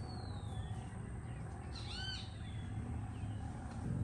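Birds calling outdoors: a thin descending whistle at the start, then a short, harsh, arched call about two seconds in, over a steady low rumble.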